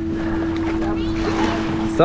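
A boat's motor humming steadily at one pitch, over wind and water noise.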